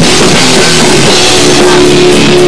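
Rock band playing live: electric guitars, bass guitar and a drum kit, loud and continuous.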